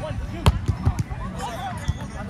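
Volleyball being hit by players' hands and arms during a rally on grass: a sharp slap about half a second in, the loudest sound, with further smacks near one second and just before the end. Players' voices call out in between.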